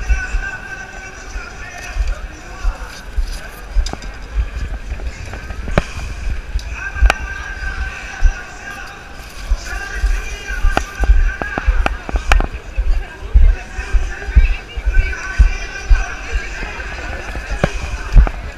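Busy city sidewalk ambience: indistinct voices of passers-by and some music, with frequent sharp knocks and low bumps close to the microphone.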